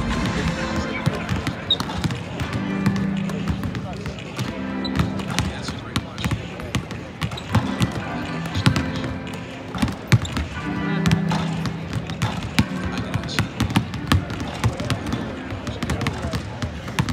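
Basketballs bouncing on a hardwood court during shooting practice: many irregular sharp thuds, with music playing underneath.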